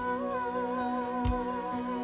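Slow pop ballad: a female voice holds the word "start" on one long note with vibrato over steady backing music, with a drum beat about halfway through.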